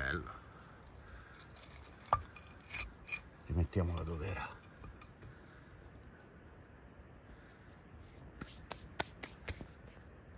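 Soft rubbing and scraping as a porcini mushroom is worked loose from the forest soil by hand, with a few sharp clicks scattered through it. A short voiced sound, likely a grunt or exclamation, comes about three and a half seconds in.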